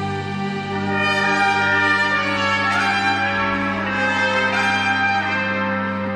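A band playing live in a large hall: held instrumental notes over a steady low drone.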